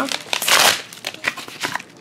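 Trading-card packaging crinkling as it is handled and opened by hand, with one louder rustle about half a second in and then scattered small crackles.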